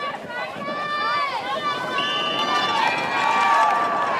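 Crowd of spectators yelling and cheering during a football play, several high voices holding long shouts over one another, growing a little louder as the play goes on.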